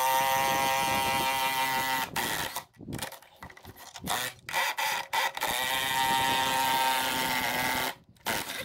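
Cordless DeWalt drill running under load as it drives a clamp-on tyre tool at a tractor wheel rim: two runs of about two seconds each, with a pause of about three seconds between them. The second run spins up in pitch, then holds steady.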